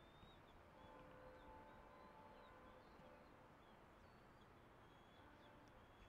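Near silence: faint outdoor ambience with small birds chirping high and thin, and a faint distant tone for about two seconds starting about a second in.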